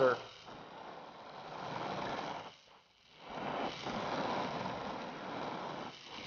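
Glassblowing torch flame running with a steady rushing hiss. The sound drops out almost completely for about half a second near the middle, then resumes.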